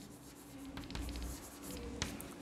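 Chalk scratching faintly on a blackboard in short strokes as a word is written.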